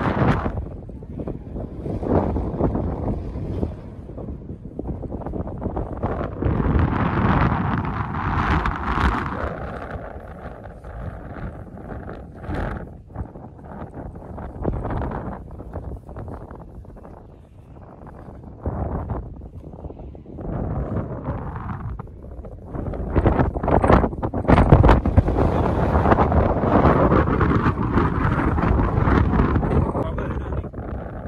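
Wind buffeting the microphone: a rough low rumble that gusts up and dies back, strongest over the last several seconds.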